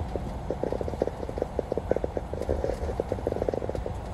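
Rain ticking on a car's windshield as many small irregular taps, over the low rumble of tyres on a wet road.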